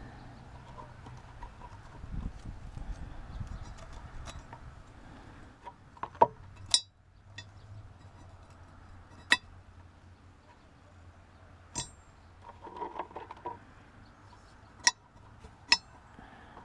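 Scattered sharp clinks and knocks, about six spread through, from a cast-iron exhaust manifold and its metal spacers being handled and set down.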